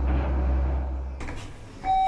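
Steady low elevator hum that cuts out a little past halfway with a faint click, followed near the end by a bright single-tone elevator chime signalling arrival.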